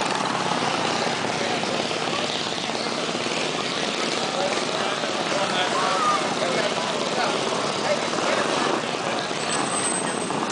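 Small mini bike engines buzzing as the bikes ride past, mixed with crowd chatter.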